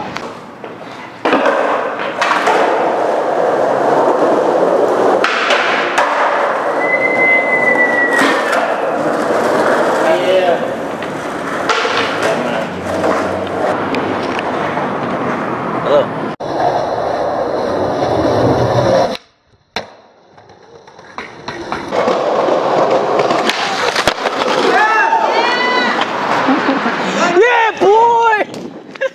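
Skateboard wheels rolling over asphalt, a loud, rough rolling noise. About two-thirds of the way through it cuts out almost completely for a moment, then builds back up.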